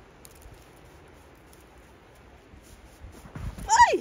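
Faint outdoor background for about three seconds, then near the end a loud vocal cry whose pitch falls sharply, leading into laughter.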